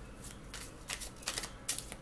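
A deck of oracle cards being shuffled and handled by hand: a string of short, quick card flicks.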